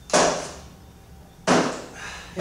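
Two sharp knocks about a second and a half apart, a shot glass and a drink can being set down on and picked up from a workbench top.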